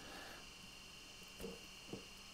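Near silence: faint room tone, with two soft knocks about a second and a half in and just before the end as a plastic hose and its fitting are handled.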